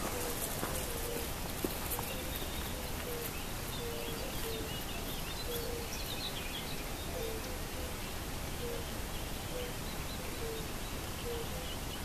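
Steady outdoor background hiss with a bird repeating short low call notes about once a second, and a few higher bird chirps in the middle.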